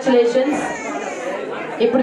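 Voices and chatter in a large hall: one voice at the start and again near the end, quieter talk in between.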